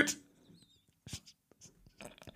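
A man's voice trails off at the very start, then a near-silent pause in a small room, broken by a few faint, short, soft sounds about a second in.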